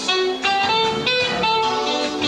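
Live band with keyboard and drums playing a Brazilian MPB song, a melodic line of distinct held notes stepping up and down over the accompaniment.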